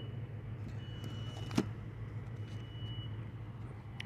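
Steady low hum of an idling car engine, with a faint thin high whine coming and going.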